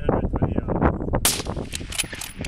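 A single shot from a scoped .308 target rifle about a second in, a sharp crack with a short hissing tail.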